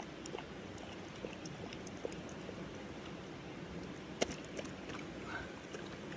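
Dog eating wet food from a stainless-steel bowl: small scattered clicks and wet mouth sounds, with one sharper click a little past four seconds in. A steady rush of river water runs underneath.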